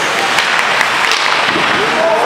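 Ice hockey play on the rink: a steady hiss of skates on the ice, broken by a few sharp clacks of sticks and puck.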